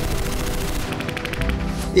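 Rapid machine-gun fire, many shots a second and clearest from about a second in, over a low music score.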